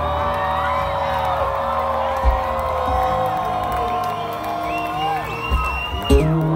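Live concert music over a loud PA, with long held tones that slide in pitch and the crowd cheering and whooping over it.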